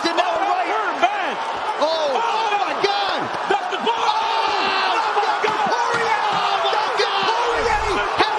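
Many voices shouting excitedly over one another, broadcast commentary with arena crowd, with a few sharp smacks among them.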